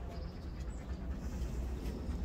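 Dogs moving about on a wooden deck, with a few light clicks over a steady low rumble.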